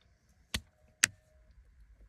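Two short, sharp clicks about half a second apart, with only faint room tone around them.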